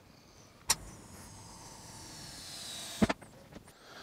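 Vehicle scissor ramp being lowered with a car on it: a click about three-quarters of a second in, then a steady hiss with a high whine falling in pitch as it descends, ending in a clunk just after three seconds as it comes down.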